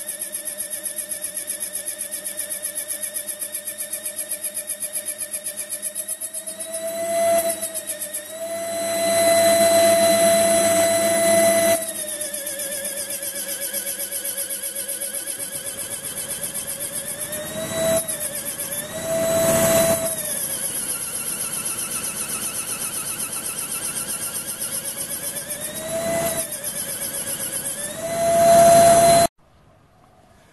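Small air die grinder in a lathe tool post whining steadily as its small grinding wheel grinds down a washer turning in the lathe. The whine rises briefly in pitch several times with surges of louder rushing noise, and everything cuts off suddenly near the end.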